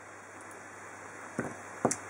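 Quiet room tone with two short, sharp clicks, one about a second and a half in and one just before the end.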